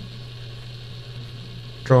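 A steady low electrical hum with faint hiss in the room during a pause in talk; a man's voice comes back in near the end.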